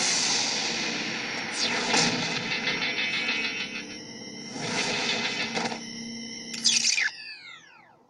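Cartoon action sound effects over fading music: rushing, noisy blasts and sweeps, then a sharp loud hit near the end followed by a falling tone that dies away.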